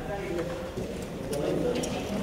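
Indistinct voices of ground crew, with a few light metallic clicks, about a second in and near the end, from hand tools on a wing pylon's bomb rack as a bomb is fastened to it.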